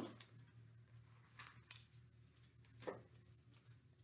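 Near silence: room tone with a steady low hum and a few faint, brief rustles and taps from handling a cutout paper footprint, the clearest about three seconds in.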